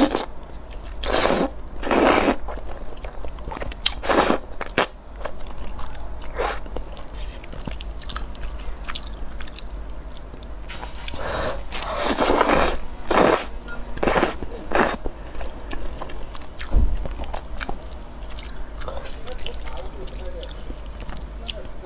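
Close-miked slurping of saucy noodles: a few loud slurps in the first seconds and another cluster around the middle, with softer wet chewing in between.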